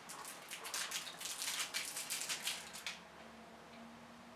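A small cardboard eyeshadow sampler package being opened by hand: a quick, irregular run of light crinkles and clicks that stops about three seconds in.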